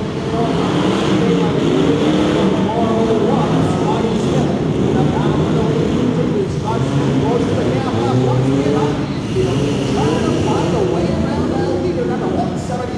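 Several off-road race trucks' engines running together inside an arena hall, revving up and down as the trucks race over the dirt.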